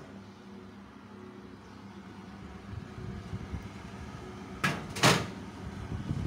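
An oven door opened and a glass baking dish set onto the oven rack: low handling rumble, then two sharp clunks about half a second apart near the end.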